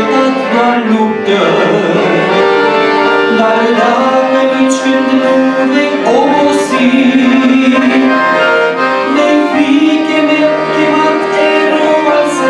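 Piano accordion playing a slow hymn tune: sustained reed chords under a melody line, the bellows holding the notes steady.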